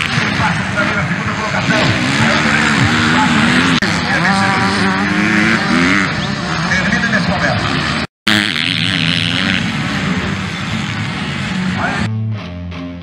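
250cc dirt bike engines racing on a dirt track, their pitch rising and falling as they rev, mixed with spectators' voices shouting. The sound drops out briefly about eight seconds in, then resumes.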